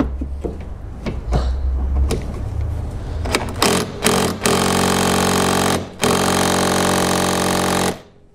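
Light clicks and knocks of hand tools on the bolts. Then a power tool runs loud and steady with a buzzing tone: three short bursts, then two long runs of a couple of seconds each, broken by a short gap.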